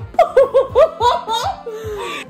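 Two women laughing hard together, in rapid ha-ha pulses that trail off near the end, over quiet background music.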